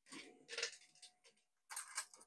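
Faint handling noises: a few soft clicks and rustles, with a faint steady high hum under them and a short hiss near the end.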